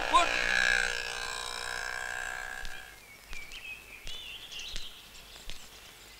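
An auto-rickshaw passing close by, its engine fading away over about three seconds. After it, faint outdoor background with a few light footsteps and brief bird chirps.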